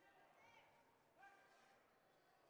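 Near silence with faint, distant voices.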